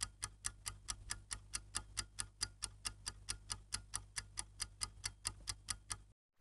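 Clock-like ticking timer sound effect, a steady tick about four to five times a second over a faint low hum, counting down the answer time; it stops just before the end.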